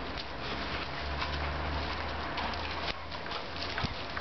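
Two German pointers playing rough over a ball: scuffling, with the patter and clicks of their paws. A single sharp knock comes near the end.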